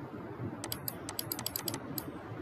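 Computer mouse button clicking rapidly, about ten sharp clicks in quick succession from a little after half a second in, over faint room noise.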